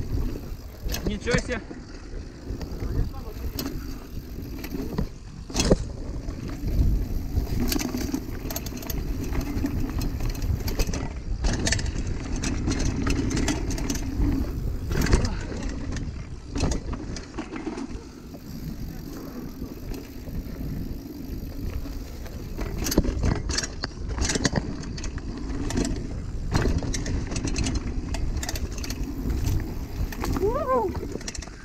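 2013 Kona trail hardtail mountain bike ridden over bumpy dirt singletrack: the tyres keep up a low rumble while the frame and drivetrain rattle, with frequent sharp knocks as it hits roots and bumps.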